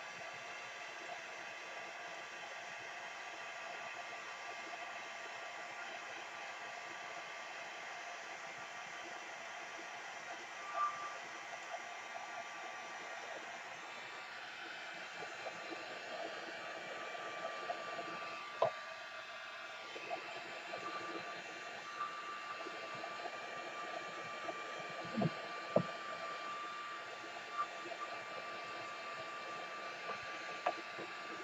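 Handheld heat gun blowing steadily, drying freshly brushed-on gel medium, with a few light knocks in the second half.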